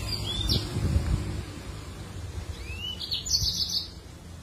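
Caged yellow-fronted canary (Mozambique canary) singing: a few short rising whistled notes about half a second in, then a rising note that runs into a quick high trill near the end. A low rumble and a few dull thumps sit beneath, loudest about a second in.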